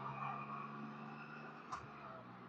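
Faint steady drone of the Can-Am Spyder RT Limited's engine at cruising speed, with a brief faint click near the end.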